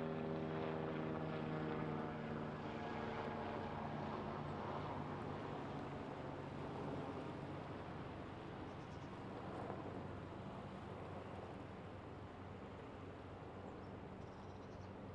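Passenger riverboat's engine running with a steady low drone, fading over the first few seconds into a steady wash of outdoor noise.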